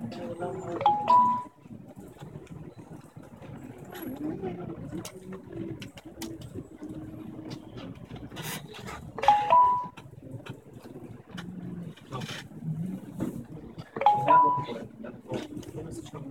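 A smartphone notification chime, a two-note ding stepping up from a lower to a higher tone, sounds three times: about a second in, about nine seconds in and about fourteen seconds in. These are a taxi-booking app's alerts as the ride status updates.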